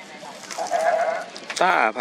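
A male commentator's voice calling out, rising near the end into a loud, drawn-out, wavering shout of the team name "Tar 1000%".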